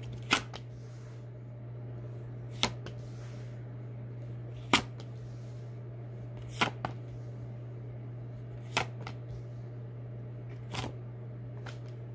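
Rider-Waite Smith tarot cards dealt one at a time onto a table, each landing with a sharp snap, about every two seconds, six in all, over a steady low hum.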